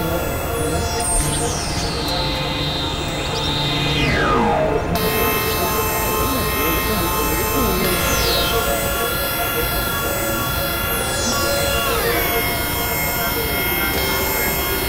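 Experimental electronic music: a dense layered drone of many held synthesizer tones, with pitch sweeps falling several times.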